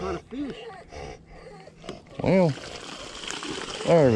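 A person's voice: soft muttering, then two drawn-out voiced sounds, one about two seconds in and a louder falling one at the end, over a steady hiss that starts about two seconds in.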